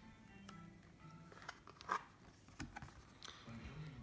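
Soft handling of a cardboard board book as a page is turned, with a few faint taps about two and three seconds in.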